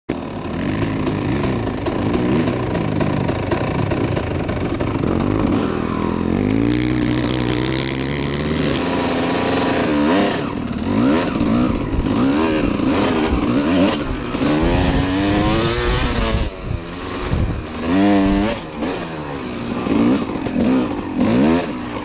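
1992 Kawasaki KX250 two-stroke single-cylinder dirt bike engine under riding load, revving up and down as the throttle is worked. It holds a fairly steady pitch for the first several seconds, then from about ten seconds in rises and falls again and again in quick surges.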